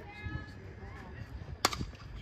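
A softball bat striking a pitched ball: one sharp, brief crack near the end, after faint calls from distant voices.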